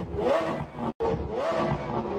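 Electronic intro sound effect: a rising tone sweeps up twice, about a second apart, with a brief cut to silence between the two.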